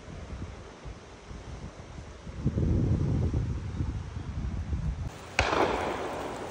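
Wind buffeting the microphone with a low rumble for a few seconds, then a single sharp shotgun shot with a short fading echo near the end.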